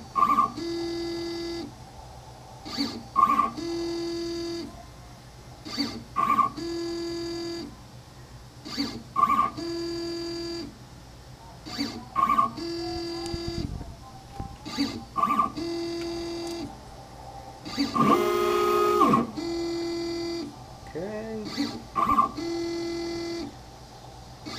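Stepper motors of a Carbide 3D Shapeoko CNC router whining through a dry run of an engine-turning toolpath, with a marker in the spindle dotting the pattern. Short moves repeat about every three seconds, each a brief blip followed by a steady whine of about a second. One longer, louder move with a rising whine comes a little past halfway, as the head goes back and offsets for the next row.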